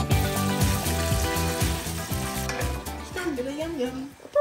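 Hot oil sizzling steadily as crinkle-cut fries deep-fry in a pot, under background music that fades out about three seconds in.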